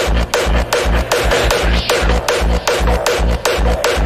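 Hardstyle electronic music: a heavy kick drum on a fast, steady beat, about two and a half hits a second, under a gritty, noisy synth layer.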